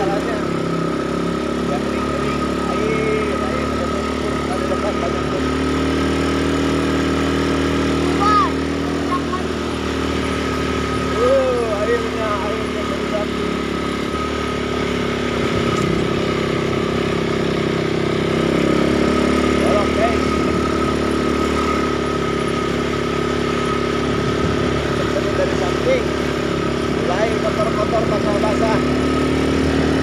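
Small ATV engine running steadily at a low, even speed while riding, its pitch drifting up and down a little, with a thin steady whine above it.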